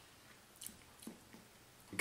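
Faint wet mouth sounds: a few soft lip smacks and tongue clicks from a taster savouring a sip of whisky.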